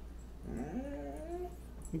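A dog whining once, a faint whine that rises in pitch and then holds for about a second.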